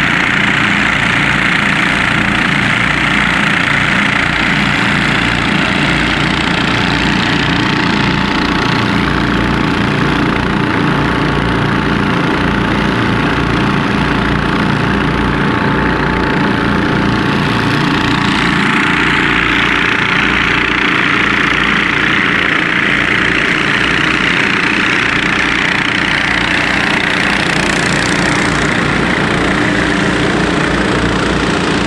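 Several portable engine-driven water pumps running steadily together, pumping floodwater out through hoses, with a rushing hiss over the engine sound.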